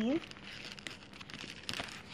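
Rustling and small clicks of a black leather long wallet being handled, fingers running through its card slots and compartments.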